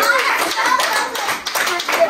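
A group of children and adults clapping their hands, with children's voices singing and talking over the claps.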